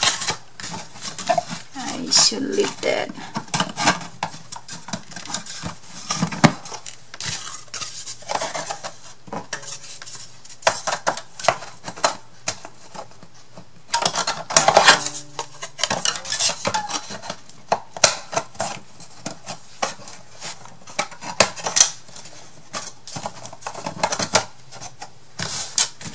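Thin wooden craft pieces clicking and knocking against each other and the table as a small shelf box is handled and its dividers fitted. The knocks come irregularly, with a busy cluster about halfway through.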